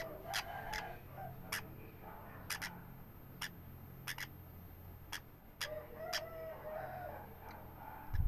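A yellow-sided green-cheeked conure chick giving short chirping begging calls while being hand-fed, once at the start and again about six seconds in, among scattered sharp clicks.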